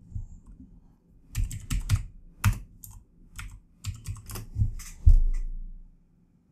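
Typing on a computer keyboard: a run of about a dozen separate keystrokes over some four seconds, each with a dull thud, ending with a heavier strike about five seconds in as the search is entered.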